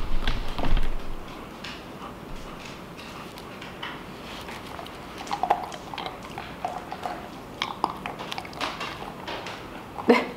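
German Shepherd puppy chewing a hard, crunchy dog treat: irregular sharp crunches, more frequent in the second half.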